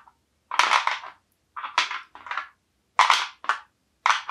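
Small toy cubes dropped back into a bowl, clattering against it and against each other: about five rattling drops over three seconds.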